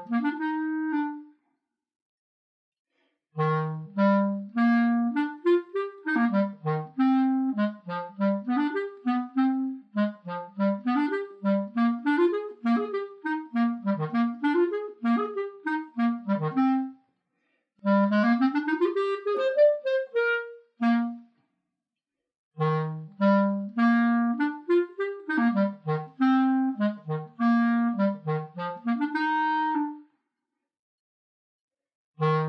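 A single clarinet playing the lower part of a lively duet: short, separated, accented notes mostly in its low register. Twice it breaks off for about two seconds where the part rests. A quick rising run comes about two-thirds of the way through.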